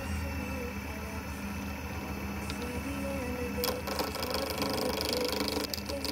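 Small Holzmann wood lathe running steadily at speed with a low motor hum, spinning pen blanks between centres. A higher hiss joins about two-thirds of the way through.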